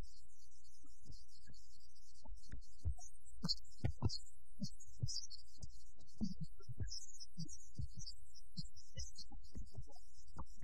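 Film soundtrack under a dialogue-free stretch: a steady low hum with irregular soft low thumps, roughly two a second, thickest in the middle.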